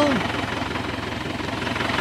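Tractor engine running steadily, a low even rumble.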